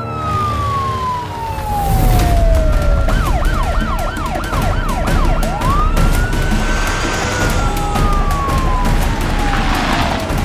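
Police car siren: a slow falling wail, then a quick up-and-down yelp of about two sweeps a second for a couple of seconds, then a slow rise and fall again, over a low rumble.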